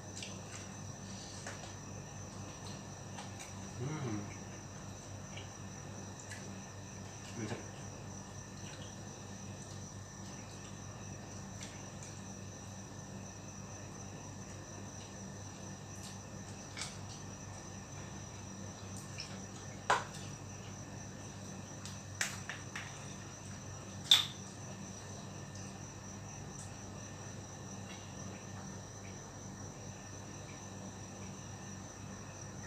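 A steady high-pitched whine and a low hum in the background, broken by a few short clicks and knocks of eating by hand from a metal bowl; the sharpest click comes a little past the middle.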